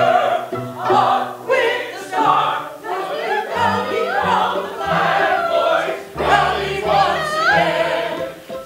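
An opera chorus of men's and women's voices singing together, the high sustained notes wavering with vibrato.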